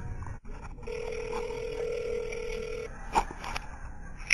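Telephone ringback tone heard down the line: one steady ring about two seconds long, the signal that the called phone is ringing at the other end. A couple of sharp clicks follow about three seconds in.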